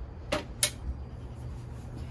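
Two sharp knocks close together, the second louder: a metal-framed glass lantern being set down on the porch floor.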